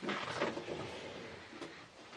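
A metal filing-cabinet drawer being opened and searched: soft sliding and rustling that fades toward the end.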